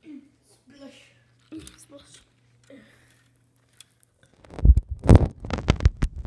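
Faint murmured voices, then about four and a half seconds in a loud run of rumbling and knocking handling noise as something rubs and bumps against the phone's microphone.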